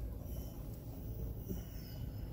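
Steady low rumble of a car's interior while driving, with a few faint thin high tones above it.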